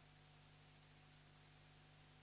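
Near silence: a steady hiss with a faint, constant low hum.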